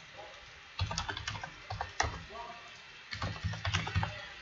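Typing on a computer keyboard: two quick bursts of keystrokes with a pause of about a second between them, as a username and then a six-character password are entered.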